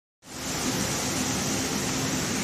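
Steady workshop background noise: an even hiss with a faint low hum under it. It starts abruptly a moment in.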